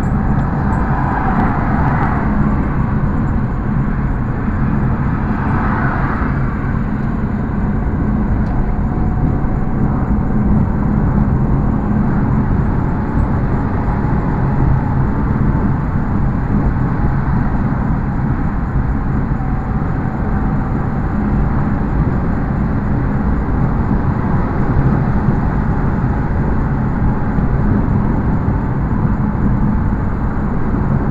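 Steady engine drone and tyre-on-road noise inside a car cruising on a highway, picked up by a dashcam microphone. Two brief louder hisses come about one and about six seconds in.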